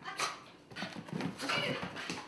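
A small dog sniffing at the floor and then scampering across wooden parquet, heard as an irregular run of short scuffing and clicking sounds from its nose and claws.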